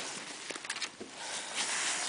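Motocross boots stepping and scuffing on dirt, with a few short clicks and a jacket brushing close to the microphone, the rustle growing louder toward the end.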